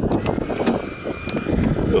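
Wind rumbling on the microphone, with a few light clicks and knocks of handling at the rear of the Jeep.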